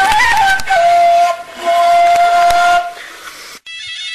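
Gasba, the Tunisian reed flute, playing long held notes with a few quick ornaments, breathy and hissy in an old, low-fidelity recording. About three and a half seconds in it cuts off abruptly and a different, cleaner traditional music piece starts.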